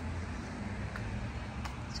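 Steady low rumble of outdoor background noise, with a couple of faint clicks.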